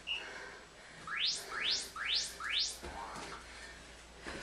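Electronic interval-timer signal: a short beep, then four quick rising chirps in a row, marking the end of a rest and the start of the next Tabata work round.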